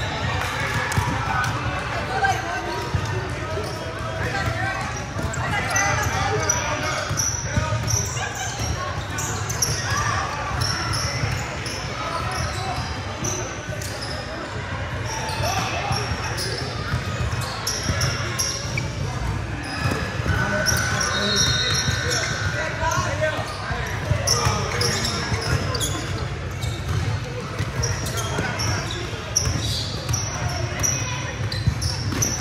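Sounds of a basketball game on a hardwood court in a large gym: a ball bouncing, many short high-pitched sneaker squeaks, and the mixed voices of players and onlookers.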